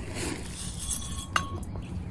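Pea gravel scooped and tipped with a metal hand scoop: small stones clinking and rattling, with one sharper, briefly ringing clink about one and a half seconds in.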